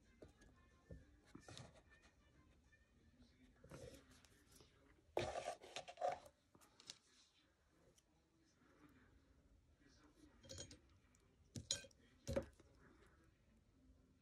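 Quiet handling noise on a tabletop: a few light clinks and knocks as small metal jewelry box corners are picked up and handled, loudest around five to six seconds in and again twice near the end.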